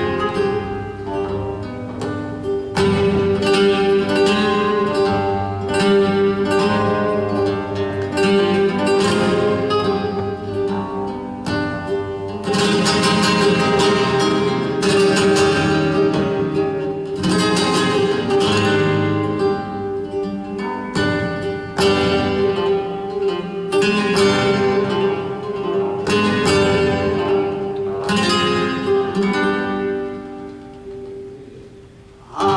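Oud and flamenco guitar playing an instrumental passage of a flamenco caña: plucked runs and strummed chords over a steady held note.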